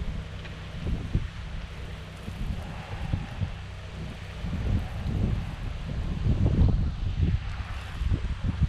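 Wind buffeting the microphone in irregular gusts, over a faint steady hiss from a low-pressure soft-wash wand spraying sodium hypochlorite mix onto a clay tile roof.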